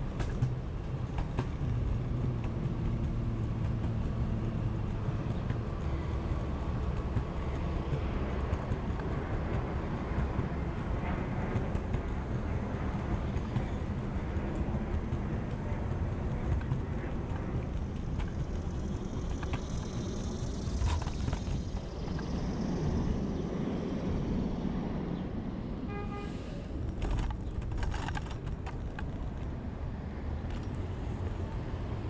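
Xootr kick scooter's wheels rolling over sidewalk pavement, with a steady rumble and city street traffic behind. A brief pitched tone sounds near the end, followed by a few sharp knocks.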